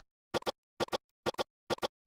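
A tiny snippet of audio repeated in a rapid edited stutter loop: a quick double burst about twice a second, four times over.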